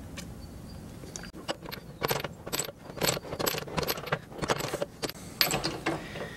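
Keyway broach being pushed through a steel bore by a press ram, its teeth cutting with a series of sharp metallic clicks, about two a second. This is a final light pass behind a thin shim, so each tooth takes only a little metal.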